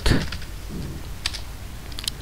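A few scattered keystrokes on a computer keyboard: single taps near the start, a quick pair past the middle, and one more near the end.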